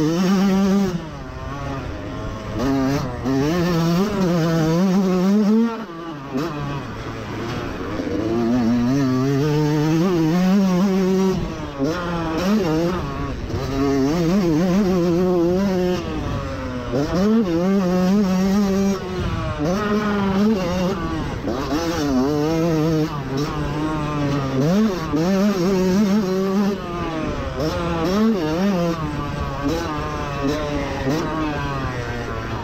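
Yamaha YZ125 two-stroke motocross bike engine revving hard under load through a lap. The pitch climbs through each gear and drops sharply at the shifts and when the throttle is rolled off for corners, over and over.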